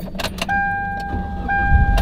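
2010 Hyundai Elantra's dashboard warning chime dinging at a single steady pitch about once a second, starting after a few clicks from the key and ignition. Near the end the engine cranks and starts, its low running sound swelling in under the chime.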